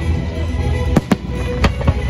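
Fireworks shells bursting: four sharp bangs, two close together about a second in and two more near the end. Show music plays steadily underneath.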